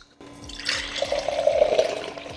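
Canned coffee latte being poured from the can into a glass mason jar, a steady stream of liquid splashing into the glass, getting louder about a second in as the jar fills.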